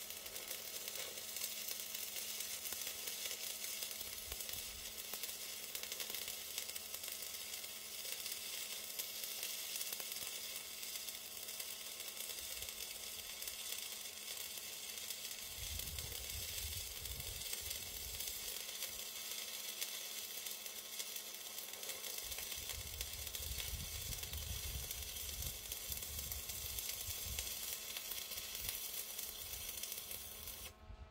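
Stick-welding (MMA) arc of a 2.5 mm Chem-Weld 7100 rutile-basic electrode crackling and sizzling steadily as it lays a butt weld; the arc burns stably along the joint. Low rumbles come and go in the second half.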